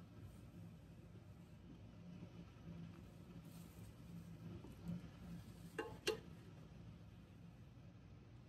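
Quiet room tone with a faint low hum. About six seconds in, two short clicks close together as the plastic sub-meter is set onto the mounting plate inside the steel enclosure.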